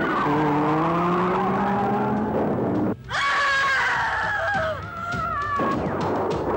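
Car engine revving, its pitch rising slowly for about three seconds. After a sudden cut comes a long high squeal that slowly falls in pitch, with music mixed underneath.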